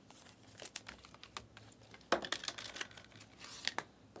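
A freshly opened pack of chrome trading cards being handled: soft crinkles and light clicks as the cards slide against each other, with a sharper click about two seconds in and a few small ones near the end.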